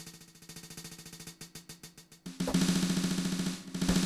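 Drum sounds from a Native Instruments Maschine Studio, triggered from its pads as rapid thirty-second-note repeats, forming a fast drum roll. It starts as quiet rapid ticks, becomes a louder, fuller roll a little past halfway, and stops shortly before the end.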